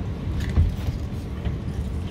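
Low, steady rumble inside a regional train as it pulls away, with a single knock about half a second in and a few lighter clicks.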